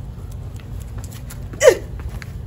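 A boy's brief yelp, one short vocal burst falling in pitch near the end, over low steady background noise.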